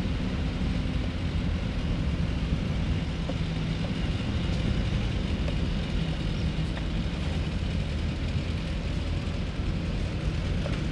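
Engines of classic military light vehicles, jeeps and a Land Rover, running at low speed as they drive slowly past over grass: a steady low rumble.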